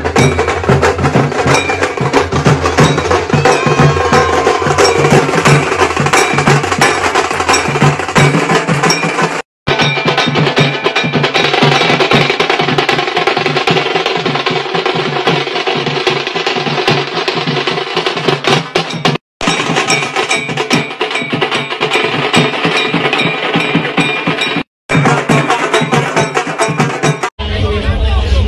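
Dhol drums beaten in a fast, loud dance rhythm, cut off by three brief dropouts.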